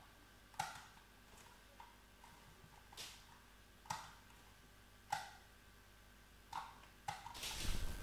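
About seven faint, sharp clicks at irregular intervals from the buttons of an Atari ST computer mouse, operated while editing note velocities in a MIDI sequencer.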